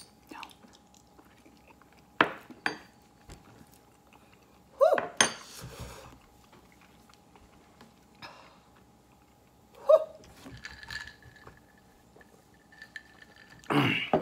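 Two sharp clinks of metal spoons about two seconds in. Short non-word vocal sounds from the people tasting follow around five and ten seconds in, with quiet room tone between.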